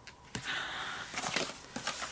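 Paper sticker sheets being handled: a sharp click, then a short rustle and a run of small ticks and scrapes.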